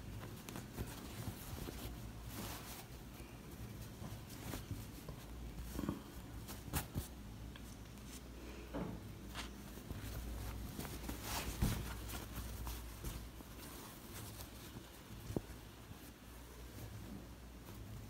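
Faint rustling of cotton fabric being handled and pinned, with scattered soft clicks and taps, over a low steady hum.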